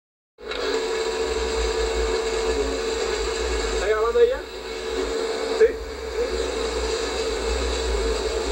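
Steady factory machinery noise, a constant hum over a low rumble, with a brief voice about four seconds in.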